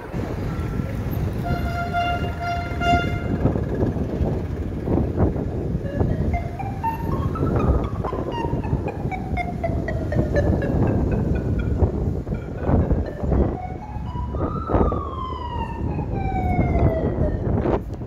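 Police vehicle siren wailing, its pitch rising and then falling slowly twice, over a loud rumble of street noise.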